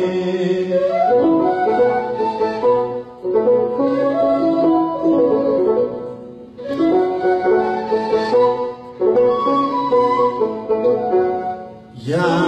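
Instrumental interlude of an Ethiopian Orthodox hymn (mezmur): a washint, the Ethiopian end-blown flute, plays the melody in phrases of about three seconds, with short breaks between them.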